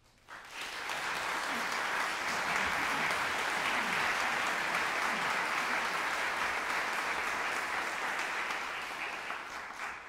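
Audience applauding: the clapping starts abruptly within the first second, holds steady and full, then tapers off at the end.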